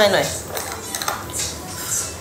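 A few light clicks and clinks of small hard objects being handled, after a spoken word at the very start.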